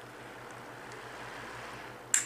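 COMELIFE rechargeable battery-powered table fan running, a steady soft rush of moving air.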